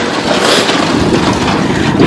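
Small utility tug towing a train of wheeled waste bins passing close by on a wet road, a steady rolling noise of its tyres and the bins.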